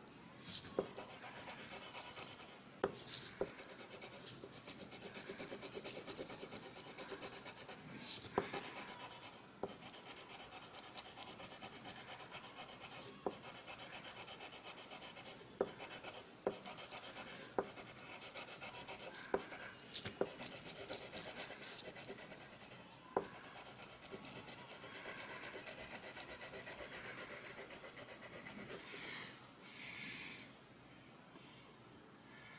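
Coloured pencil shading on drawing paper in quick back-and-forth strokes, a steady scratchy rubbing, with a few short light clicks scattered through it.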